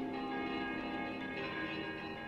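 Bells struck slowly, a fresh stroke about every second and a half, each left to ring on under the next.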